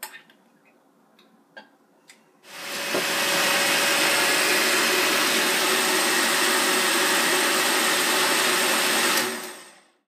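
A few light clinks of a glass jar, then about two and a half seconds in a countertop blender starts and runs steadily, blending fruit. It stops and winds down near the end.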